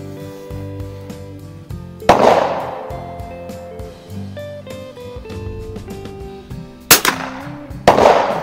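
.22 rimfire rifle shots at a range: three sharp reports, one about two seconds in and two about a second apart near the end, each ringing out briefly. Steady background music plays underneath.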